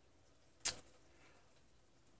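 A single short, sharp click about two-thirds of a second in, against near silence.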